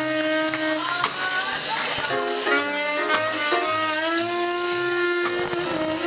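Small live jazz combo: a saxophone plays a melody of long held notes that slide into one another, over a walking upright bass line and drums with cymbal strokes.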